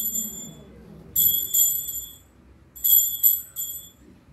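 Small hand-held altar bell, shaken in short jingling rings: one ring is dying away at the start, and two more come about a second and almost three seconds in. The ringing marks the elevation of the consecrated host at Mass.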